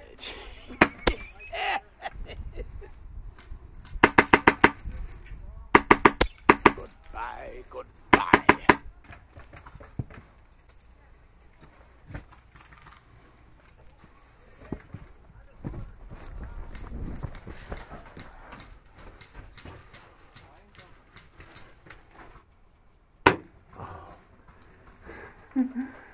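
Airsoft guns firing: three quick bursts of rapid shots a few seconds in, each under a second long, with a few single shots before and after.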